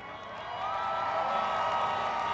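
Audience cheering mixed with many car horns honking, swelling up about half a second in as a crowd's reaction to the speech.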